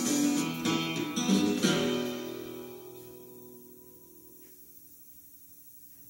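Acoustic guitar music: a few strummed chords, the last left to ring and die away to near silence about four seconds in.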